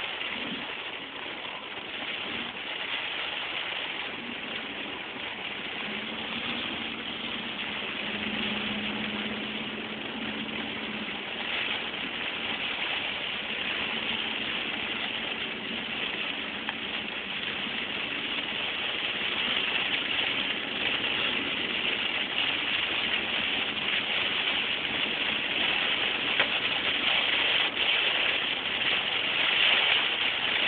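Car driving through heavy rain on a flooded road, heard from inside the cabin. Rain on the roof and windshield and water spraying off the tyres make a steady wash under a low engine hum, and the wash grows louder through the second half.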